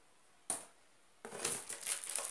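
Plastic-wrapped cosmetics crinkling and rustling against each other in a cardboard box as a hand rummages through them: a short rustle about half a second in, then a longer crinkling stretch in the second half.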